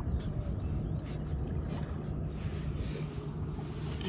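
Low, steady rumble of wind on the microphone, with water lapping against the paddle board.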